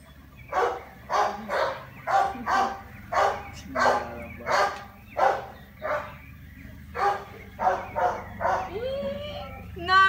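A dog barking repeatedly, about two barks a second, with a short pause about six seconds in.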